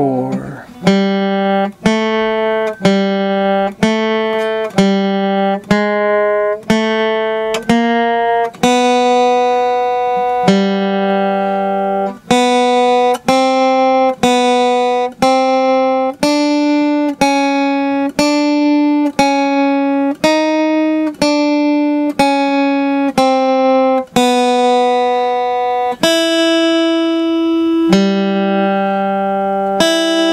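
Guitar playing a slow beginner single-note exercise, picked one note at a time on the top three strings. Most notes fall about once a second, with some held about twice as long.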